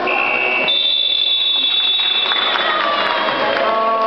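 A short high steady tone, then a long, higher steady tone held about three seconds: a signal sounding over the reverberant noise of a gym hall.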